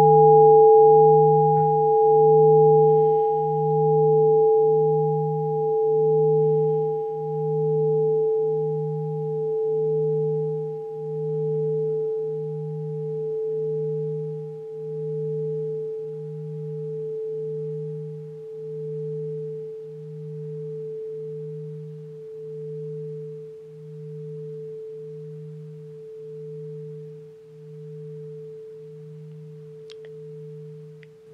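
A meditation gong ringing out after a single strike and slowly fading: a steady middle tone with a low hum beneath it that swells and ebbs about once a second, and a higher tone that dies away first.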